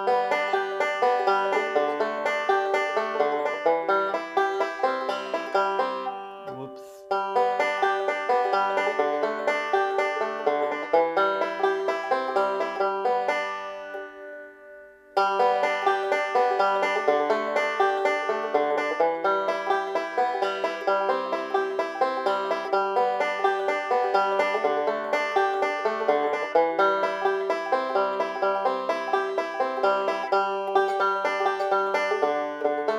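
Banjo picked in a steady rolling pattern over changing chords. The notes die away twice, about a quarter and halfway through, and each time the picking starts up again suddenly.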